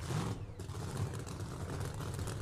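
Low, uneven engine rumble under a steady wash of background noise at a drag strip's starting line.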